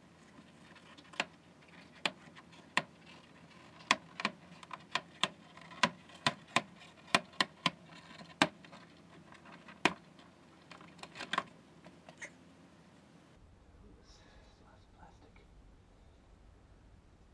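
A fast, irregular run of sharp clicks and snaps, about twenty in ten seconds, stopping about twelve seconds in. This fits the spring clips of a VW Beetle door card popping out of the door one after another as the panel is pried off.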